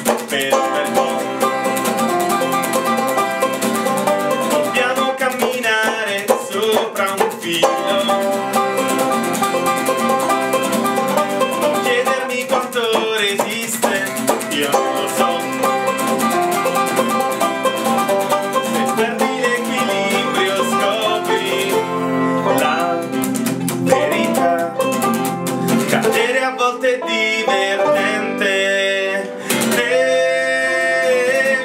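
Acoustic guitar strummed and banjo picked together in a lively acoustic folk passage, with singing coming in near the end.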